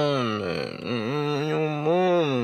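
A man's low voice singing two long, drawn-out notes, the pitch bending gently, with a short break about a second in.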